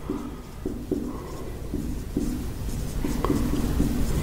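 Marker pen writing on a whiteboard in a series of short, irregular strokes, over a steady low hum.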